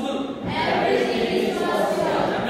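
A congregation's many voices raised together in a chant-like singing, starting about half a second in.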